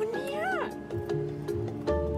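Background music with sustained notes, over which a single whining vocal cry rises and then falls in pitch about half a second in.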